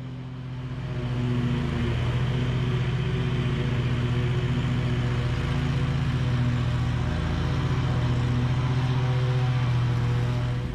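Husqvarna M-ZT 52 zero-turn mower's engine running steadily as the mower drives across the lawn, growing louder about a second in and then holding an even drone.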